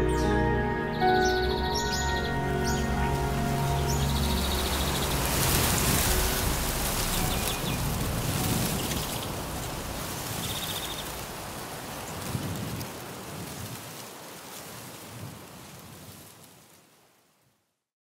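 Background music ending about four seconds in, followed by a steady outdoor hiss with a few short bird chirps. Everything fades out to silence near the end.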